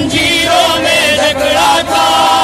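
A noha, a Shia lamentation chant, sung by a male reciter, drawing out long wavering notes with vibrato rather than clear words.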